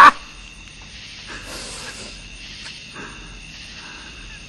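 A man gagging and sputtering as Diet Coke foams back out of his mouth and nose after Mentos: a loud choking burst right at the start, then faint spitting, dripping and a short fizzing hiss about one and a half seconds in.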